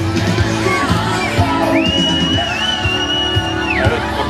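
Live rock band playing, with drums, guitars and vocals, and shouts from the crowd. A single high, held, whistle-like tone sounds over the music for about two seconds in the middle, then stops shortly before the end.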